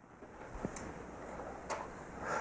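Quiet room tone in a pause of speech, with a few faint ticks.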